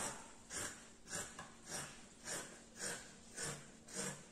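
Scissors snipping through four layers of stretch knit fabric: a faint, evenly paced series of about seven cuts.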